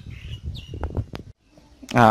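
A bird chirping faintly a couple of times, with a few light clicks about a second in.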